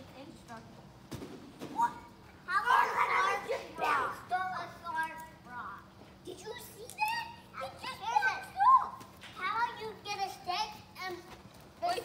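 Children's voices calling out and chattering while they play, in high, rising and falling bursts from about two seconds in, none of it clear words.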